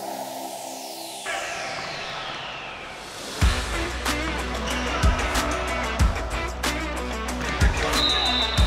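Electronic dance music laid over the match footage: a falling synth sweep over the first three seconds, then a beat with heavy bass kicks comes in about three and a half seconds in.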